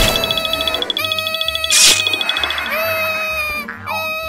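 A high-pitched cartoon character voice crying out in pain in several long, held wails, the first with a fast warble; a short noisy swoosh cuts in about two seconds in.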